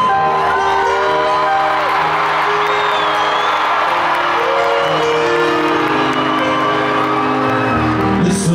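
Grand piano playing the opening bars of a slow song live, with an arena crowd cheering, whooping and whistling over it.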